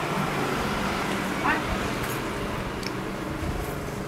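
Steady background road-traffic noise, with a brief rising chirp about a second and a half in.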